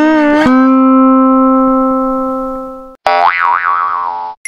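Edited-in music: a held, guitar-like note that slowly fades away, then about three seconds in a wobbling, pitch-bending tone like a cartoon boing.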